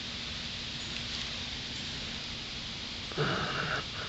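Steady background hiss, then near the end a short, louder breath close to the microphone, lasting under a second.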